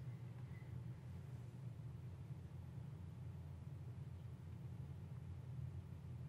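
Faint steady low hum of room tone, with a faint click right at the start.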